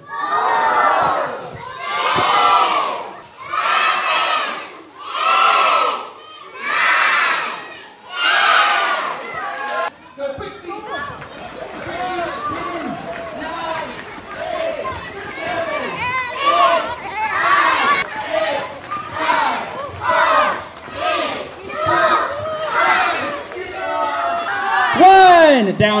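A group of children calling out together in unison, one loud call about every second and a half for the first ten seconds. Then many children's voices shouting and cheering at once, overlapping.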